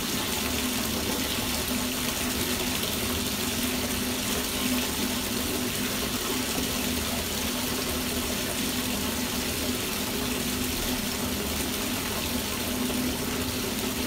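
Bathtub tap running full into a tub of bubble bath, a steady rush of water pouring into the foam, with a steady hum under it.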